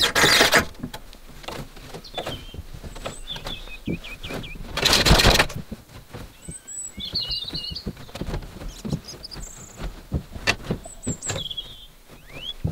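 Wooden handloom in use: scattered knocks and clatter of the wooden frame and beater, with two louder rustling clatters, one at the start and one about five seconds in. Small birds chirp in the background.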